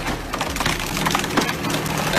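A big log cracking and splintering as a log splitter forces it through a multi-way splitting wedge: a dense run of sharp cracks and crackles over a steady low hum.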